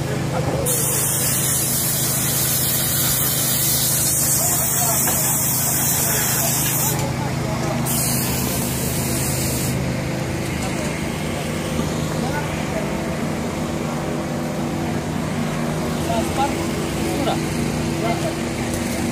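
A long high hiss like a spray or air jet, lasting about seven seconds and then again for about two seconds, over a steady low hum of running machinery.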